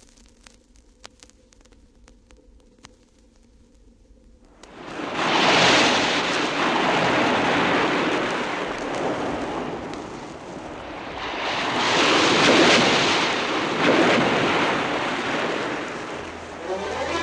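Vinyl record surface noise: faint crackle and scattered clicks in the groove between tracks. About four and a half seconds in, a loud rushing noise like surf or wind rises suddenly and swells twice, the sound-effect opening of an anime theme song before its music starts.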